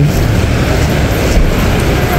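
Steady traffic noise from vehicles along a road, an even rumble heaviest in the low end, with no distinct events.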